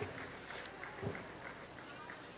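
A quiet pause between phrases of a man's amplified speech: faint steady background noise, with one brief faint sound about a second in.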